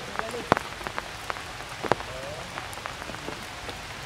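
Heavy rain falling on forest foliage: a steady hiss with frequent sharp splats of large drops hitting close by, the loudest about half a second in and just before two seconds.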